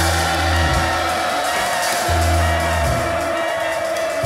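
A jazz-electronica band playing live, with long low bass notes about every two seconds under a held higher tone that slowly slides down in pitch.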